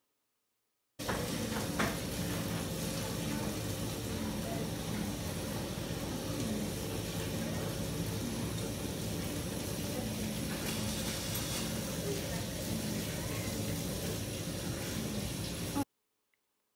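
Steady background noise of a commercial kitchen, an even hiss with a low hum, with faint voices in the background. It starts suddenly about a second in and cuts off just before the end.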